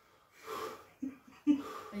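A man breathing heavily: a breathy exhale about half a second in, then short voiced gasps, as he reacts to the electric pulses of a labour-pain simulator's chest electrodes.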